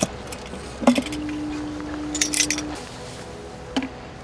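A Hasselblad H6 camera and its underwater housing being handled. A sharp click comes about a second in, light metallic clinks follow in the middle, and another click comes near the end. A steady low hum runs for under two seconds after the first click.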